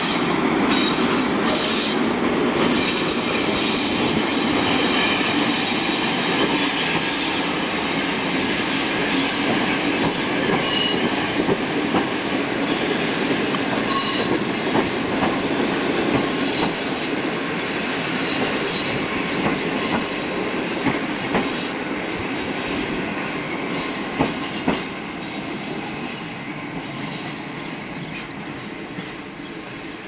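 Passenger train hauled by a PKP Intercity electric locomotive rolling past on the track, its wheels clicking over the rail joints. The noise fades gradually as the train draws away.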